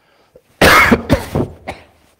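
A man coughing: one loud, sudden cough about half a second in, followed by a few smaller coughs.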